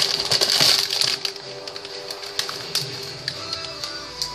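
Background music plays steadily under a string of rustles and sharp clicks from things being handled, densest in the first second or so.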